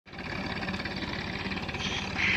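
Tractor diesel engine running steadily under load, driving a tubewell pump to lift irrigation water, with a rapid, even firing beat.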